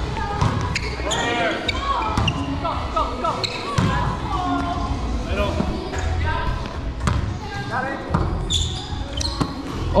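Players' voices calling and talking in an echoing gymnasium, with several sharp thuds of a volleyball being hit and bouncing on the hardwood floor.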